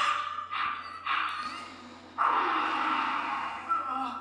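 Anime film soundtrack: hoarse, strained, creature-like cries and sound effects in three stretches, the last and longest from about halfway through.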